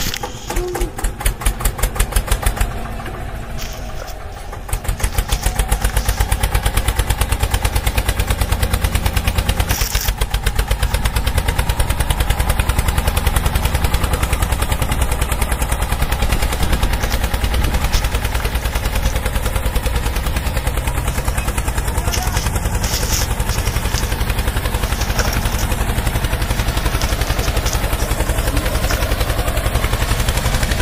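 Tractor engine running with a fast, even chugging beat; it drops a little about three seconds in, then comes back louder and runs steadily.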